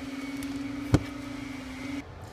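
A steady low electrical-sounding hum with one sharp knock about halfway through. The hum cuts off abruptly at the end.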